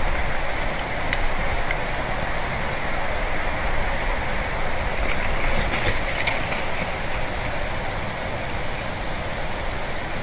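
Steady wind rushing through the pine trees and over the outdoor microphone, with a low rumble underneath.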